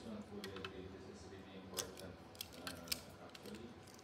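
Small plastic clicks and snaps of Gundam model kit parts being handled and the legs pressed into place, several sharp clicks spread through, one louder near the middle.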